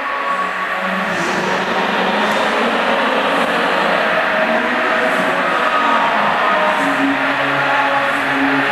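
A large audience laughing and applauding after a joke, a dense, steady wash of clapping and laughter that swells slightly.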